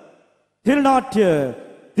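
Speech only: a man talks, with a brief silence before a short spoken phrase.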